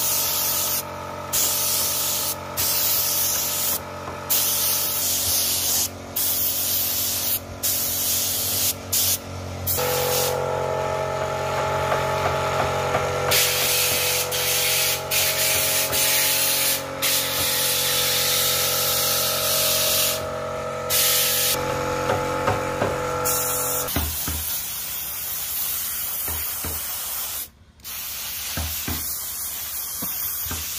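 Spray gun spraying PU polish in long hissing passes, broken by many short pauses, over a steady machine hum.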